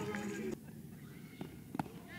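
Faint ballpark field sound from a softball broadcast: distant voices at the start, then a quieter stretch broken by two short sharp clicks close together in the second half.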